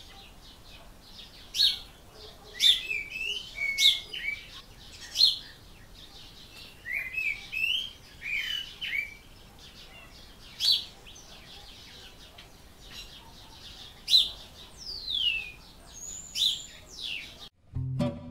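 Several small birds chirping and singing: short chirps and quick falling whistles, scattered irregularly over a faint steady background hiss. Guitar music starts up again right at the end.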